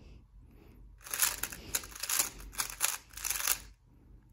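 3x3 speed cube turned rapidly by hand: a dense run of plastic clicking and clacking layer turns that starts about a second in and stops shortly before the end, the sound of a fast algorithm being executed.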